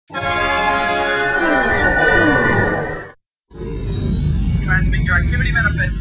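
Music plays for about three seconds and cuts off. After a short break, a spaceship engine sound effect comes in as a low rumble with a faint rising high tone for the Imperial shuttle's flyby. A voice starts near the end.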